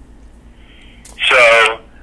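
Speech only: after a quiet pause with a low steady hum, a man says "so" a little over a second in.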